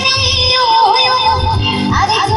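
A woman singing a long, wavering, ornamented melody line through the PA, with a live band accompanying her over a steady low beat.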